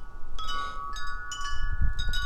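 Wind chimes ringing in gusty wind: a couple of struck metallic notes that ring on and overlap, over a low, uneven wind rumble.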